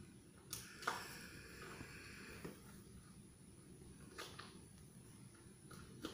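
Faint breath blown through a small plastic toy bubble tube for about two seconds, in another attempt to blow up a bubble that has kept failing, with a few soft clicks. Otherwise the room is near quiet.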